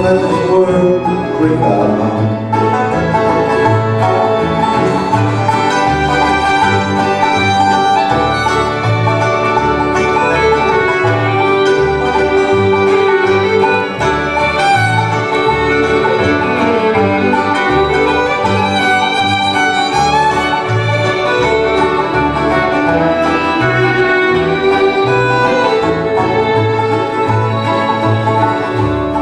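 Live bluegrass band in an instrumental break: a fiddle carries the melody over banjo, mandolin, acoustic guitar and an upright bass thumping out a steady beat.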